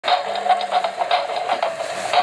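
Electric motor and gears of a toy radio-controlled Hummer whining as it drives, a steady whine with a regular pulsing.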